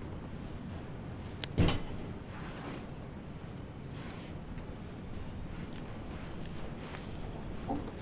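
Gritty sand-cement mix being crumbled and pushed around by hand: a steady rough rustle and scrape of grit, with one sharp knock about one and a half seconds in.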